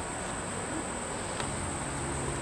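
Steady chorus of crickets or katydids, a constant high-pitched trill, with a faint low hum coming in about halfway through.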